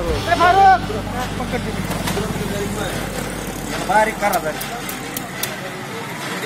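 An engine running steadily under people talking, its low rumble fading out about four and a half seconds in; a few faint ticks follow near the end.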